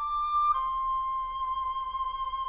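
Solo flute playing a slow melody: a short note, then a step down about half a second in to a long held note.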